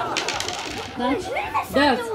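Small dice tumbling across a hard tabletop, a quick rattling run of clicks at the start that dies away within about a second.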